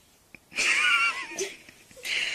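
A person's high-pitched, wavering stifled laugh lasting under a second, with a faint click just before it.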